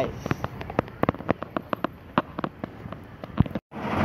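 Irregular sharp clicks and taps, several a second: footsteps and handling noise from a phone carried by hand while walking across a paved lot. The sound drops out briefly near the end.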